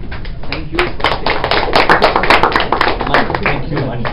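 A small group of people clapping, building up about half a second in and dying away near the end.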